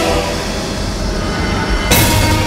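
Dramatic TV-serial background score under a reaction shot: a dense, sustained noisy swell with many held tones, ending in a sharp hit near the end.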